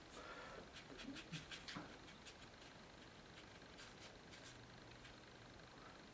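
Faint, scattered ticks and scratches of a watercolour brush dabbing on paper, coming in two short runs in the first half, against a quiet room.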